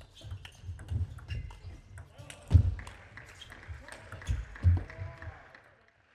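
A table tennis rally: rapid sharp clicks of the plastic ball off rackets and table, with a few heavy low thuds of the players' footwork. A voice calls out near the end as the point finishes.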